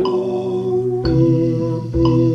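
Electronic keyboard playing sustained chords, a new chord about once a second, with a man singing along.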